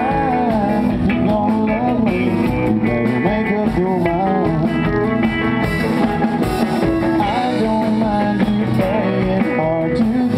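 Live country band playing loud: an electric guitar lead with bending notes over rhythm guitars, bass and drums.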